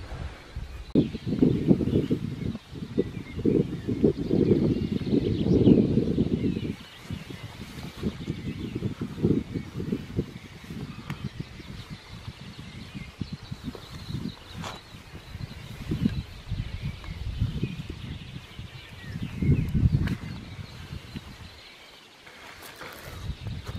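Low, uneven rumble and rustle of handling noise on the camera's microphone, heaviest for the first several seconds and again briefly near the end.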